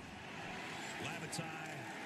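Faint sports-broadcast commentary: a commentator's voice, low under a steady background wash.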